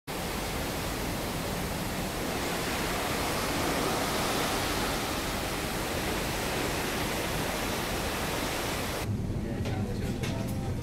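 Steady rushing noise of wind and sea water streaming past the side of a moving ship. About nine seconds in it cuts off abruptly to a much quieter indoor room tone with a few faint clicks.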